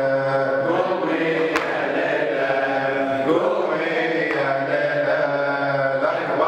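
Men's voices chanting a Shia Muharram latmiya, a mourning elegy, led by a reciter singing into a microphone. The notes are long, held and wavering.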